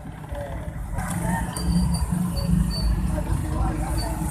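Road traffic heard from inside a vehicle: a low steady engine rumble from slow-moving cars and motorcycles, with a few short high beeps about two seconds in.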